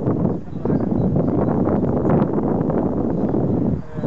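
Wind buffeting the camera microphone: a steady, loud rush of noise that dips briefly about half a second in and again near the end.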